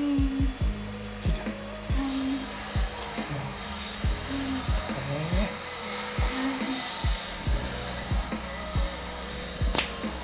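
Background music with a deep thudding beat, irregularly spaced about half a second to a second apart, over a low held melody.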